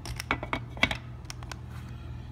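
Clay poker chips clicking against one another and against a clear plastic chip-box insert as barrels of chips are handled and set down. There is a run of sharp, irregular clicks, most of them in the first second and a half.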